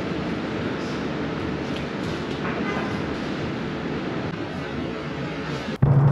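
Steady noisy background rumble with faint voices underneath; it cuts off suddenly near the end.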